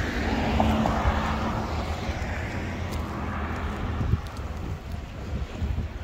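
Wind rumbling on the microphone over the noise of road traffic going by on a street, loudest in the first two seconds.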